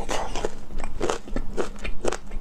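Close-miked chewing of lemon chicken feet with chilli, an irregular run of short clicks as the skin and cartilage are bitten through.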